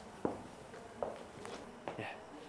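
Footsteps: about four separate sharp steps, quiet and unevenly spaced.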